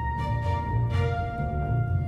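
Orchestral waltz cue played back from virtual instruments: strings, brass and woodwinds over a pulsing low bass on the beat. A held high note steps down to a lower one about a second in.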